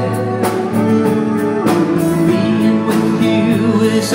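Live band soundcheck: a man singing a slow ballad over guitar and band, heard through the open sound of a large, empty arena.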